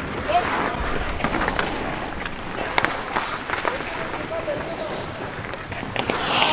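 Ice hockey play on an indoor rink: skate blades scraping the ice, with repeated sharp clacks of sticks and puck and players' shouts.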